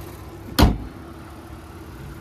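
The hood of a Honda Ridgeline slammed shut, one loud sharp bang about half a second in, over the low steady hum of its 3.5-litre V6 idling.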